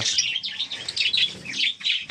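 A flock of caged lovebirds chirping: many short, high chirps overlapping in a continuous chatter.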